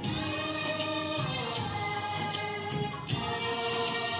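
Hindi prayer song sung by a group, with musical accompaniment and a light shaken-percussion beat.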